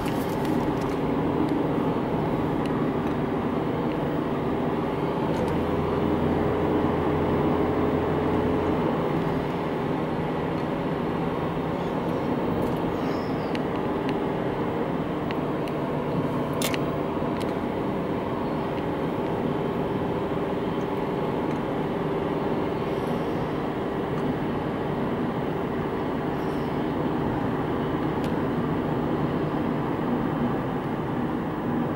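Steady road and engine noise of a car driving on an asphalt road, a continuous drone with a low hum. A single sharp click sounds past the middle.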